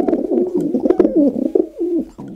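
Domestic pigeon (rock pigeon, Columba livia) cooing: a run of low coos that waver up and down in pitch.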